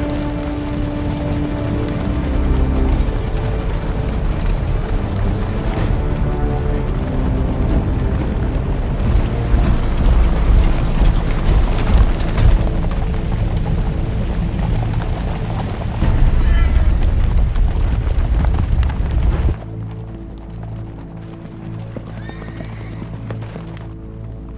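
Film soundtrack mix: a music score over the noise of massed cavalry, horses neighing and hooves, with the voices of an army. Near the end the army noise drops away suddenly, leaving quieter music with held notes.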